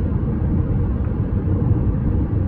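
Steady low rumble of tyres on rough asphalt, heard inside the cabin of a 2020 Jeep Compass 2.0 Flex cruising at about 100 km/h.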